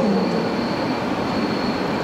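Steady rushing background noise with a thin, faint high-pitched tone running through it, with no distinct events.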